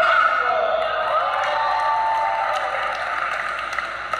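Crowd of spectators cheering and shouting, many voices overlapping, with scattered clapping.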